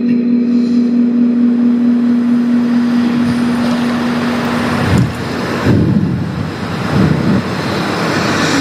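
A man's voice chanting Quran recitation (qira'at): one long note held steady for about five seconds, then a break and the melodic chant going on with gliding pitch.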